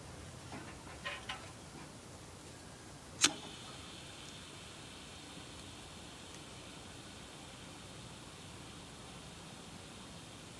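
A few light clicks, then one sharp click of a lighter being struck about three seconds in, followed by a faint steady hiss of its flame held to the kindling.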